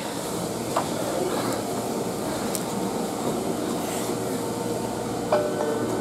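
Steady background noise of trains standing at a covered station platform. A faint steady whine joins about five seconds in.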